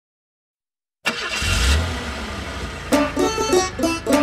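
Silence for about a second, then a cartoon vehicle engine sound effect starts suddenly with a low rumble that eases off. About two seconds later music with plucked notes begins over it.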